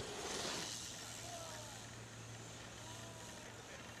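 BMX bike landing off a dirt jump: a short rush of tyre noise on packed dirt about half a second in. After it a low steady hum carries on underneath.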